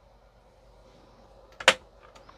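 Faint room hiss, then one sharp click about one and a half seconds in, as a small enamel paint bottle is knocked against the clear acrylic paint rack.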